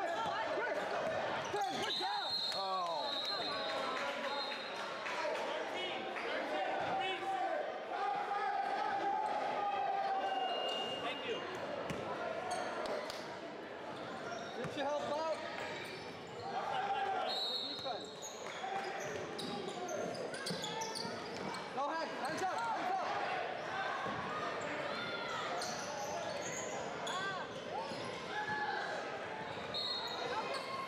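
Basketball bouncing on a hardwood gym floor during a game, with players' and spectators' voices echoing in the hall. Short, high referee whistle blasts sound about two seconds in and again about seventeen seconds in.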